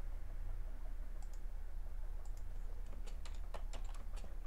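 Computer keyboard keystrokes: scattered clicks, a few in the first half and a quicker run near the end, over a steady low hum.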